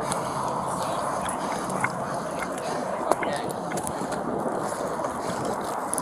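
Steady outdoor noise picked up by a police body-worn camera's microphone as the wearer walks, with a few soft clicks.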